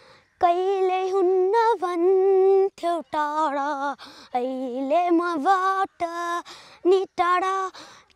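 A boy singing alone, unaccompanied, in Nepali: a slow lament with long held notes that bend and glide, sung in phrases with short breaths between them. It starts about half a second in.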